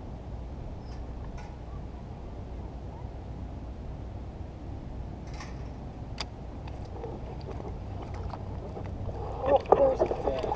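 Steady low wash of harbor water around an inflatable float tube, with a few faint sharp clicks. A loud voice breaks in near the end.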